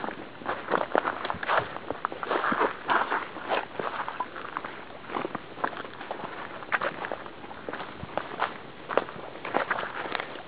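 Footsteps of people walking over a granite outcrop: irregular short scuffs and steps.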